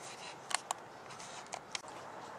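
A few light, sharp knocks of a wooden ball being handled and set down on the lathe: two close together about half a second in, and two more about a second and a half in.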